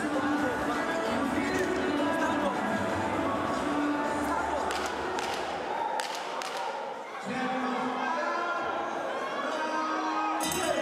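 Background music playing in a large arena hall, over people talking nearby and in the crowd, with a few thuds about halfway through.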